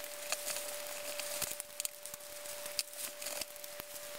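Faint crackling and small clicks of masking tape being wrapped around a plastic drinking straw and a wooden skewer, over a steady thin hum.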